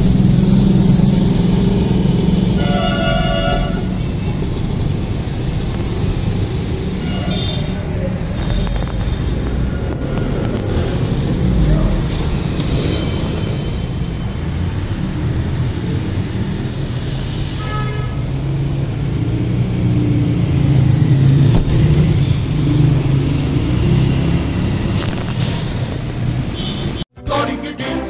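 Steady low rumble of road traffic, with a vehicle horn honking briefly about three seconds in.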